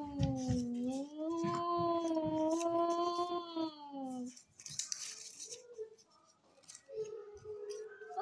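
A child's voice holding one long, wavering tone that dips and rises slowly, then stops about four seconds in. Faint short voice sounds and small clicks follow.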